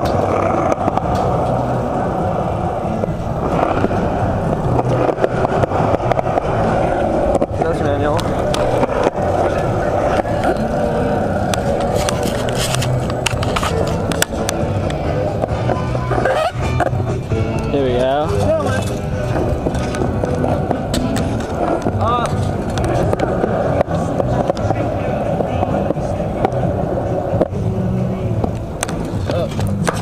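Skateboard wheels rolling over pavement: a loud, steady rolling rumble with scattered sharp clicks.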